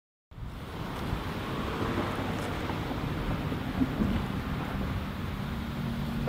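Steady outdoor background noise, a low rumble with a hiss over it, starting a moment in.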